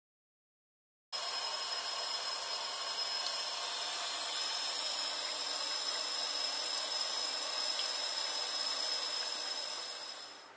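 Water pouring from a homemade PVC compression-coupling filter on a tap and splashing into a glass in a sink: a steady rushing that starts abruptly about a second in and dies away near the end.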